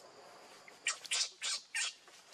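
Infant macaque crying: four short, shrill cries in quick succession, starting about a second in.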